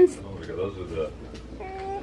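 Faint murmur of voices, then a short, steady-pitched vocal sound near the end.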